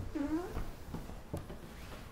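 Silk sarees being handled on a table, with a couple of soft knocks, and a brief faint pitched call about half a second long near the start.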